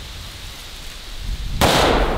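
A single shot from a Taurus 444 Ultralight .44 Magnum revolver, one sudden loud crack about one and a half seconds in that trails off briefly.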